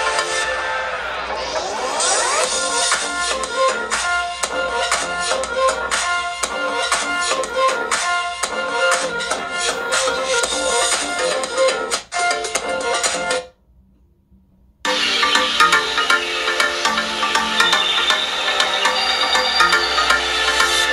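Electronic music with a steady beat played through the Google Pixel 2 XL's two front-firing stereo speakers in a phone loudspeaker test. The music cuts out for about a second past the middle, then resumes from the Pixel 3 XL's speakers.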